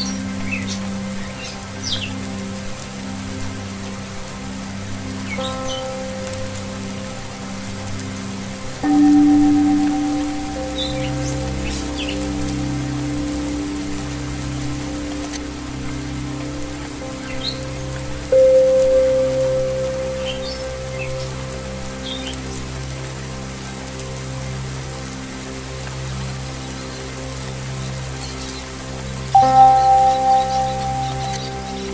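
Steady rain mixed with Tibetan singing bowl music over a low wavering drone. New bowl tones are struck about 9 seconds in, about 18 seconds in and just before the end, each ringing out slowly. Short bird chirps come and go throughout.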